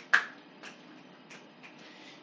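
A sharp click just after the start, followed by three fainter clicks, over a faint steady room hum.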